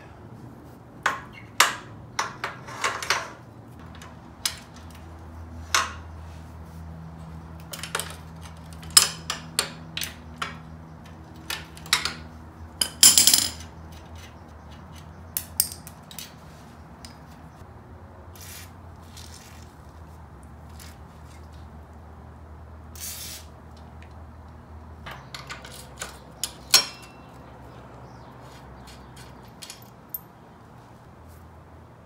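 Scattered metallic clinks and knocks of hand tools and sockets against the ATV's steel front steering knuckle and ball-joint hardware, with one short denser rattle about 13 seconds in.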